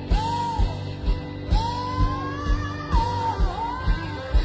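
Rock song with singing: a steady kick-drum beat about twice a second under a vocal melody that slides up and down.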